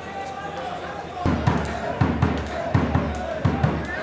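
Players shouting, then from about a second in a run of irregular low thuds, two or three a second, of a football being kicked and dribbled, over a low hum.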